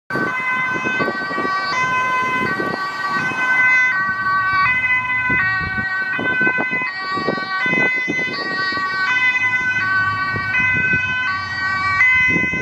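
Ambulance two-tone siren sounding on an urgent run, alternating between a high and a low pitch about every 0.8 seconds. Cars pass with a low rumble of engine and tyre noise underneath.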